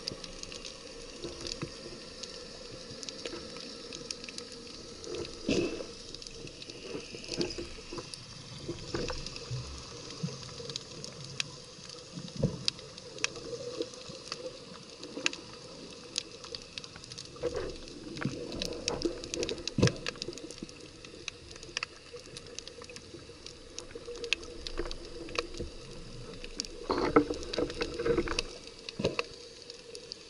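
Underwater sound picked up by an action camera in its waterproof housing: a steady muffled wash of water with scattered irregular clicks and knocks, a few of them louder, around halfway and near the end.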